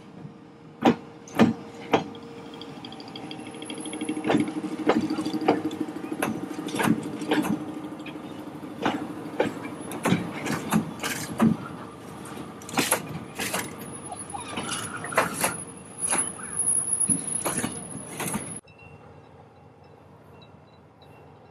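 Freight train of hopper wagons rolling slowly past, with a run of loud, irregular metallic clanks and knocks from the wagons and a thin high squeal that comes and goes over a steady low running sound. The sound cuts off sharply near the end.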